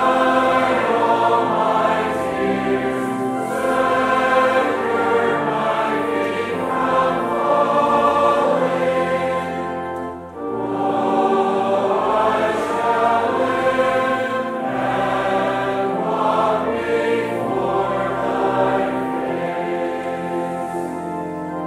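Congregation singing a metrical psalm together, accompanied by pipe organ, with a short break between lines about ten seconds in.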